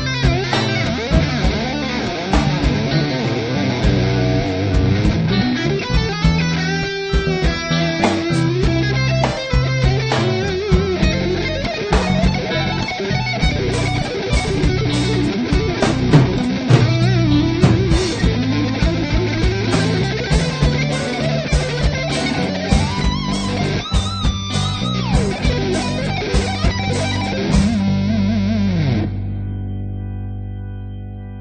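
Electric guitar played through a Mesa amplifier: a fast lead phrase in G major, a descending legato run articulated with taps on the tremolo bar, then arpeggiated triads over E minor, C major, F-sharp diminished and B minor chords, over steady low accompanying notes. Near the end the playing stops and a held note rings out and fades.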